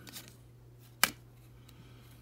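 Trading cards handled in the hand: a faint slide of card on card, then one sharp snap of a card about a second in as the top card is moved to the back of the stack. A faint low hum runs underneath.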